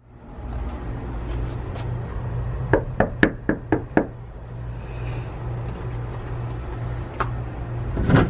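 A fist knocking on a front door: about six quick, evenly spaced raps about three seconds in, over a steady low hum.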